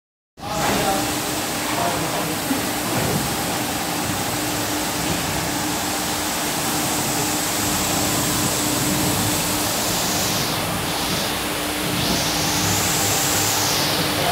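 Automatic carpet washing machine running: its rotating brush discs and water scrubbing a rug, a steady rushing wash noise with a constant motor hum underneath.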